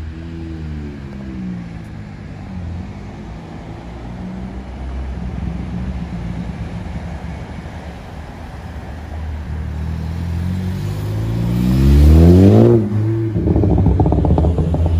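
A 2016 Ford Focus ST's turbocharged four-cylinder with a catless downpipe and cat-back exhaust, running a Stratified progressive crackle tune, pulling away at low revs. The revs then climb steadily to a loud peak as the car passes, about twelve seconds in, and drop suddenly just before the end.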